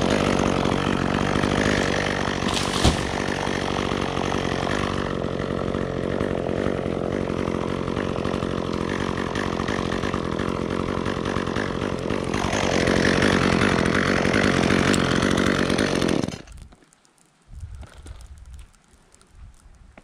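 Chainsaw idling steadily, then shut off about sixteen seconds in. Afterwards, faint brushing of sawdust off the freshly cut stem.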